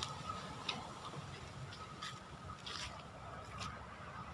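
Faint outdoor background under trees: a low steady hiss with a thin steady high tone, and a few soft ticks scattered through it.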